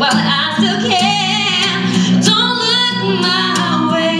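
A woman singing a slow pop ballad live, holding long, wavering notes, over acoustic guitar accompaniment.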